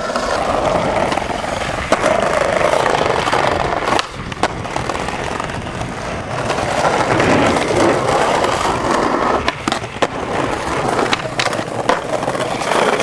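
Skateboard wheels rolling over brick paving with a continuous gritty rumble, broken by several sharp wooden clacks of the board as tricks are popped and landed.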